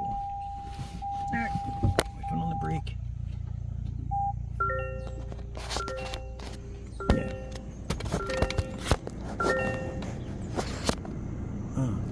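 Toyota bZ4X dashboard warning chimes as the car is switched on: a steady electronic tone for the first few seconds, then a multi-note chime repeating about every second and a bit, over a steady low cabin hum, with a few clicks.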